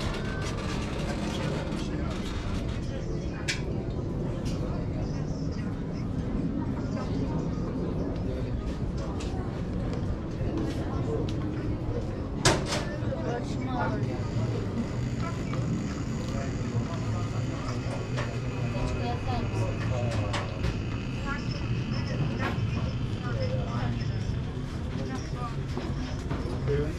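Outdoor street ambience: people's voices in the background over a steady low rumble, with one sharp click about halfway through.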